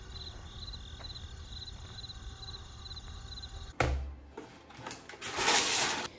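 Insect-like chirping repeating about twice a second over a low hum. About four seconds in comes a knock, followed by loud crackling rustle near the end.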